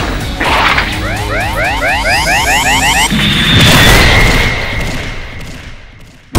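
Dubbed cartoon fight sound effects over background music: a rapid string of short rising zaps, about five a second for two seconds, for a flurry of blows, then one big boom that slowly fades out.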